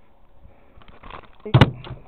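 A sharp knock about one and a half seconds in, with a man's short exclamation around it.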